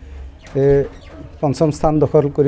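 A man speaking in short phrases, with a pause about half a second long in the middle.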